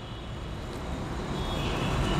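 Steady low rumble of passing road traffic, growing slowly louder.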